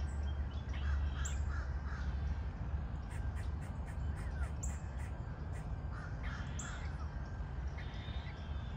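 Birds calling outdoors in short calls scattered through, over a steady low rumble.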